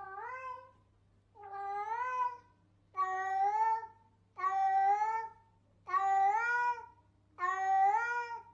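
A recorded cat meow played on a loop: six near-identical long meows, each rising in pitch and then holding, about one every second and a half, over a faint low hum.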